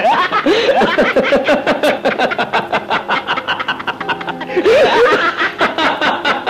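Two men laughing hard together in quick repeated bursts, over background film music.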